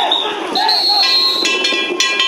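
Danjiri float pullers shouting together, with a long high whistle blast about half a second in. From about halfway, the float's hand gongs start ringing with sharp metallic strikes over the shouts.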